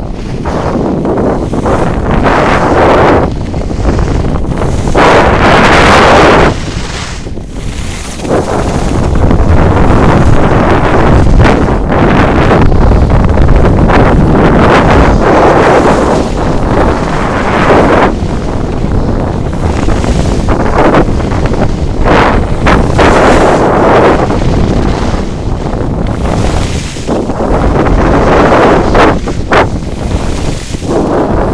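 Wind buffeting the microphone of a camera moving fast down a ski slope: a loud, rumbling rush that swells and drops in surges.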